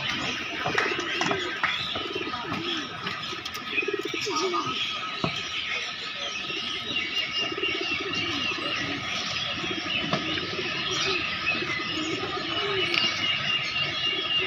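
Domestic pigeons cooing over and over, with higher-pitched bird chirping mixed in, more of it in the second half.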